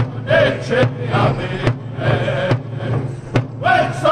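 Powwow drum group singing around a large bass drum, struck in unison with padded drumsticks in a steady beat under a chorus of men's wavering high chant. The singing thins midway and comes in loud again near the end.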